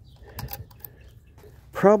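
Quiet background with a few small clicks about half a second in, then a man starts speaking near the end.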